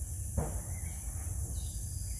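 Steady high-pitched insect drone with a few faint bird chirps, over a low rumble. A brief knock about half a second in.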